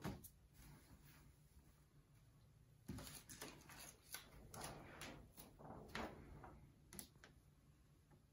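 Faint handling sounds of a screen-printing mesh screen being set down and shifted into line on a print board: one sharp click at the start, then a run of small clicks, taps and rustles from about three seconds in to about seven.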